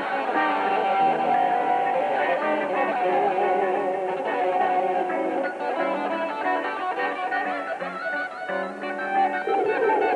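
Electric guitar playing a melodic passage, with higher lines moving over lower notes that change in steps.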